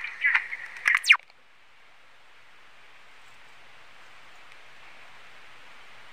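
A voice speaks briefly at the start, with a quick falling sweep about a second in. After that there is only a faint, steady hiss.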